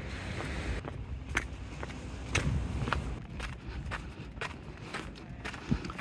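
Quiet outdoor ambience: a steady low rumble with a scattering of light, irregular taps.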